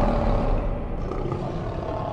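A recorded lion's roar used as a logo sound effect, slowly fading out.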